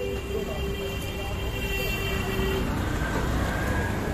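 Street traffic noise: a steady low rumble of road vehicles, with a steady hum for the first two and a half seconds.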